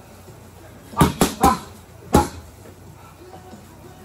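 Boxing gloves striking focus mitts: three punches in quick succession about a second in, then one more punch a moment later.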